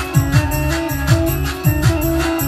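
Instrumental Arabic keyboard music with a steady electronic drum beat: repeated falling-pitch bass thumps under held synth-organ notes.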